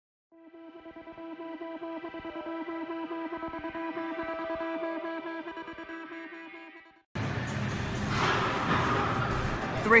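Intro music: one sustained chord with a fast wobble, fading in and dying away about seven seconds in. It cuts abruptly to the steady noisy background of a gym.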